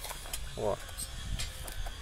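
Metal spoon scraping and clicking against the inside of a small tin can as it scoops thick two-part epoxy adhesive, a few light scattered clicks.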